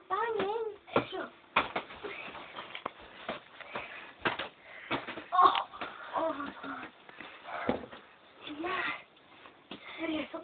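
Boys' wordless shouts and grunts during a play boxing scuffle, with scattered sharp thumps and slaps from blows and bumps, several a few seconds apart.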